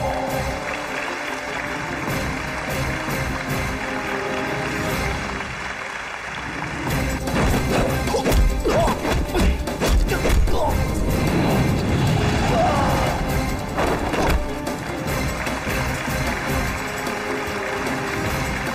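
Dramatic film-score music with punch and impact sound effects from a hand-to-hand fight, the hits coming thick and fast in the second half.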